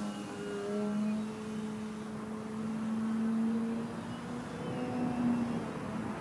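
Motor of a Skywing 55-inch Edge 540T RC aerobatic plane droning in flight overhead. The pitch holds steady but shifts slightly up and down as the throttle changes through its manoeuvres.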